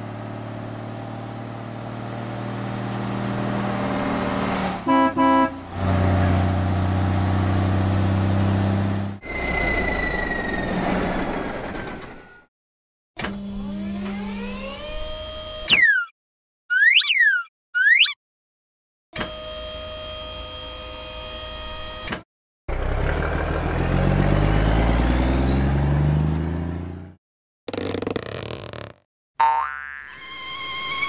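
A string of cartoon sound effects: a toy truck's engine hums steadily, with a short pulsed honk about five seconds in. Past the middle come three quick springy boings as the eggs bounce out of the tipping dump bed, and later a low rumble.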